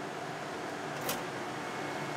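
Steady background hum of the machine shop, with one short sharp click about a second in as the latch of a steel storage cabinet door is released and the door swung open.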